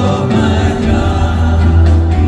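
Christian praise-and-worship music: a choir sings over full band accompaniment with a strong, sustained bass, a new chord or phrase coming in at the start.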